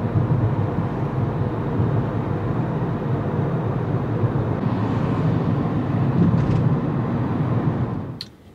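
Steady low rumble and hiss of a car's road and engine noise, heard from inside the cabin while driving.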